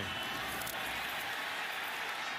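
Steady stadium crowd noise: an even, continuous din from a large crowd, with no single cheer or impact standing out.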